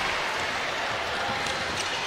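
Steady crowd murmur in a basketball arena, with faint bounces of a basketball dribbled on the hardwood court.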